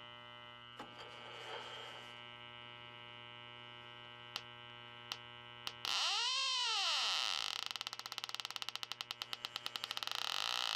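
Electronic refrigerant leak detector alarming over a steady hum. About six seconds in, a loud tone swoops up and falls back, then fast beeping quickens until it is almost continuous. The probe has picked up refrigerant at the back of the evaporator coil, a second leak in the coil.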